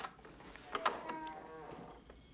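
A door latch clicks twice, then the hinges give a long creak that falls slightly in pitch as the door swings open.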